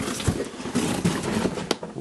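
Rustling, scuffing noise from a hand-held camera being moved around, with a sharp click near the end.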